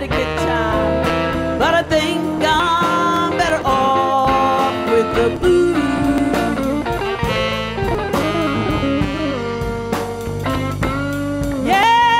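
A live blues band playing, with electric guitar, electric bass and drums, and a woman singing held, wavering notes over them.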